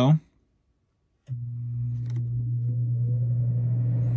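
RV air conditioner's blower fan starting on low: a steady hum comes on suddenly about a second in, with a faint whine rising as the fan spins up.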